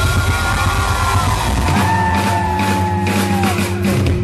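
Live rock band playing: distorted electric guitars, bass guitar and drum kit, with long held notes over a steady low end and cymbal crashes from about halfway in.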